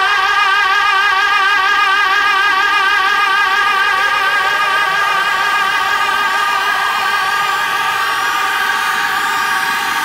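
Electro house breakdown: sustained synth chords with a wavering, wobbling pitch and no drums or bass. A rising sweep builds through the second half toward the beat's return.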